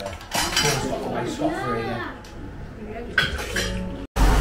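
Restaurant dining-room clatter: plates and cutlery clinking in several sharp strikes, with voices talking in the background.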